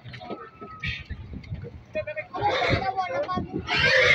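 Pigs squealing loudly, two long harsh squeals, the second near the end, as they are handled and loaded onto a truck.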